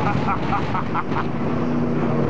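The LS1 V8 of a Toyota LandCruiser 80 Series running hard as it spins a donut on sand, with a person laughing in quick repeated bursts over it during the first second.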